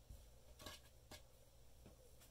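Near silence, with three faint soft ticks from embroidery floss being handled and knotted on a tabletop.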